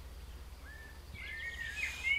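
Faint bird chirps, short high gliding notes starting a little past halfway, over a low steady background hum.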